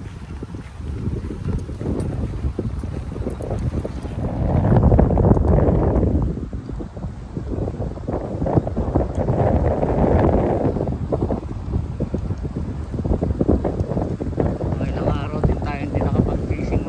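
Strong wind buffeting the microphone, a rough low rumble that swells in gusts, loudest about five seconds in and again about ten seconds in.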